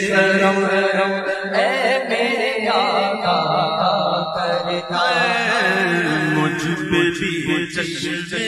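Male voice singing a naat in a long, wavering melismatic line with no clear words, over a steady low drone.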